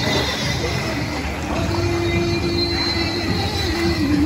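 Pool water splashing and sloshing as feet dragged from a swinging chain swing kick through it. A steady, squeal-like tone is held over it through the second half.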